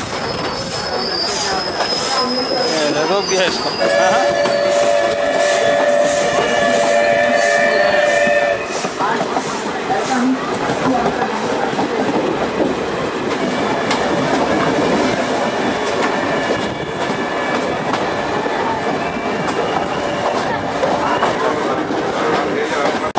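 Rolling noise and wheel clatter of a moving train, heard from its open doorway, with a thin high wheel squeal in the first few seconds. A long, steady two-tone train horn blast sounds from about four seconds in and stops at about eight and a half seconds.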